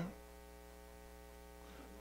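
Faint, steady electrical mains hum picked up through the microphone and sound system: a low buzz with a ladder of evenly spaced overtones that does not change.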